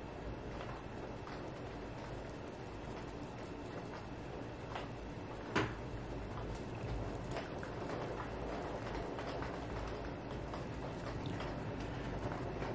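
Rain hitting the windows: a faint steady patter with scattered light ticks, and one sharper click about five and a half seconds in.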